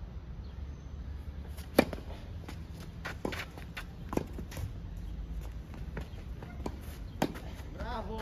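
Tennis ball struck by rackets in a rally on a clay court: a sharp serve hit about two seconds in is the loudest, followed by several quieter knocks of returns and ball bounces at irregular intervals.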